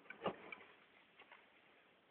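A cat eating wet cat food off a plate: faint wet chewing and tongue clicks, a few separate ticks with the loudest one just after the start.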